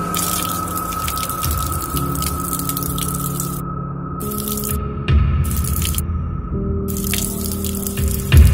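Horror soundtrack: held low chords that shift about every two seconds under a steady high tone, with water dripping over it. A louder low hit comes in about five seconds in.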